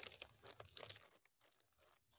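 Faint rustling and light clicks of small things being handled on a desk: a quick run of short ticks in the first second or so, then near silence.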